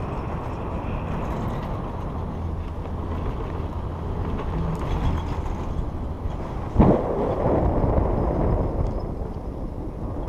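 Chairlift ride with steady noise from wind and the moving haul rope. About seven seconds in, a sudden loud rolling noise lasts a second or two and then fades: the chair's Schwaiger fixed grip (von Roll VR 102 type) is running over the tower's sheave train.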